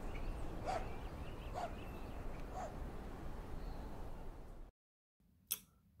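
Low steady hiss with three short, faint animal calls about a second apart. Near the end the sound cuts out briefly, followed by a single click.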